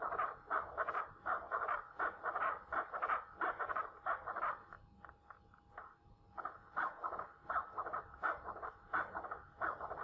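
Pulsed-wave Doppler audio from an ultrasound machine's speaker: the pulsing whoosh of blood flow through the heart's mitral valve, beating with each heart cycle. It starts abruptly, fades for about a second and a half just past the middle, then picks up again.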